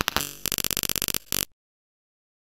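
Digital glitch sound effect: crackling bursts of static breaking into a rapid stutter, then one last burst that cuts off suddenly about one and a half seconds in.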